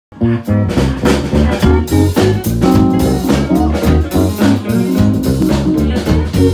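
A live funk band playing at full volume: a punchy bass guitar line, a steady drum kit beat and keyboard chords, with the sound cutting in abruptly mid-song.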